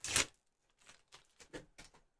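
Hands handling an acrylic sheet and its protective plastic film: one short rustle at the start, then several faint, brief rustles and taps.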